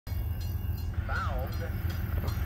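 Low, steady rumble of an approaching CN freight train, with a person's voice heard briefly about a second in.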